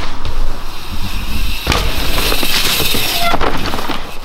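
Mountain bike tyres rolling and skidding over wet, sloppy trail dirt: a loud, crackling hiss of mud and grit under the wheels, with a sharper crack about halfway through.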